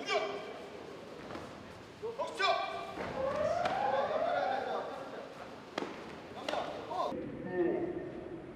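Drawn-out shouted calls echoing in a large hall during taekwondo sparring, with two sharp thuds near the end.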